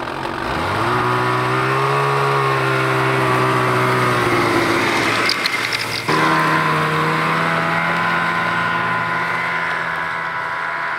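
Snowmobile engine revving up as the machine pulls away, then running at a steady pitch. About six seconds in the pitch jumps up and holds as it drives off across the ice.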